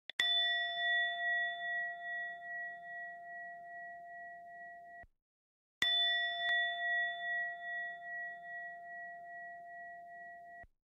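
A bell-like chime, struck twice about five and a half seconds apart, in the intro of an electronic dance track. Each strike rings on with a slowly fading, wavering tone. The first is cut off abruptly after about five seconds, leaving a brief silence before the second strike.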